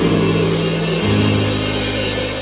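Live church band music: held chords over sustained bass notes, the chord changing about a second in.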